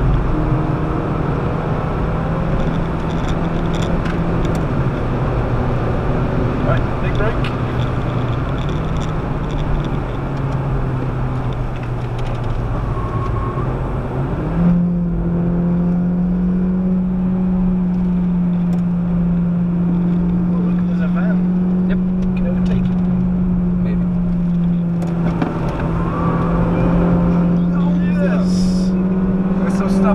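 Citroën DS3's 1.6-litre four-cylinder petrol engine heard from inside the cabin at track speed. The engine note drops in steps as the car slows for a corner. About halfway through, the revs jump up as the four-speed automatic shifts down, and the note then holds steady and high under heavy road and wind noise.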